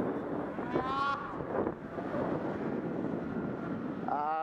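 Steady rushing noise of wind on the microphone while skiing across snow, with a short rising pitched sound about a second in.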